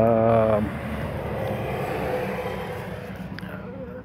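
Traffic noise from a vehicle going by on the road, swelling through the middle and fading near the end, after a brief spoken sound at the very start.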